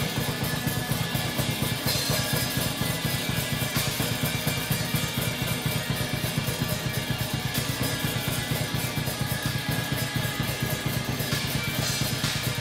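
Rock drum kit played fast and hard: bass drum, snare and cymbals in a rapid, even, driving pattern of about seven strokes a second, with a sustained low tone from the electric guitar underneath.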